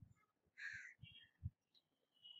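Near silence with a faint, harsh bird call in the background about half a second in, a weaker short call just after it, and a faint low bump about one and a half seconds in.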